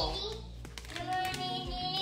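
A young girl singing, holding one long steady note that starts about halfway through after a brief lull.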